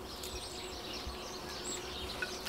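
Faint outdoor garden ambience: scattered small bird chirps over a low steady hum.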